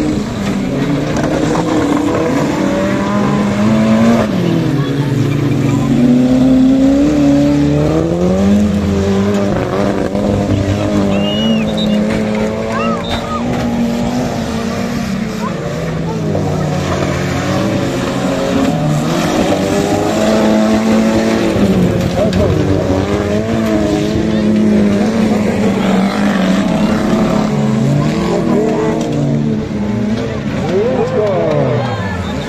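Several stock-car engines running hard, their pitch climbing and dropping over and over as the cars accelerate and slow around the track.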